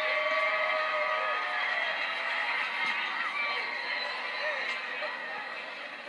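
Indistinct voices and stadium crowd noise from a football television broadcast, heard through the TV's speaker; the noise eases slightly in the second half.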